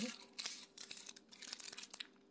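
Paper burger wrapper and paper takeaway bag crinkling and rustling in the hand, in several short bursts, strongest in the first second.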